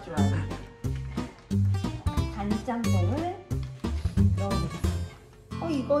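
Background music: a plucked acoustic-guitar tune over a steady, repeating bass beat.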